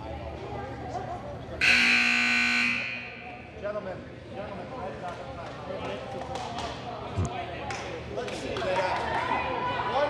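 Gymnasium scoreboard buzzer sounding once for about a second, a steady electric tone about two seconds in, ending a timeout. Around it are the murmur of a gym crowd and a few scattered knocks on the hardwood floor.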